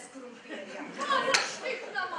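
Actors' voices speaking stage dialogue, with one sharp slap about one and a half seconds in.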